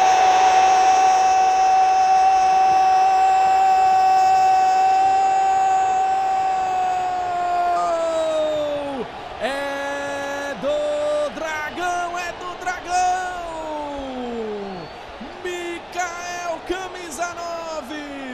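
A Brazilian TV football commentator's drawn-out goal cry, a single 'gooool' held on one pitch for about eight seconds that then falls away, followed by shorter excited shouts. A stadium crowd makes a steady noise underneath.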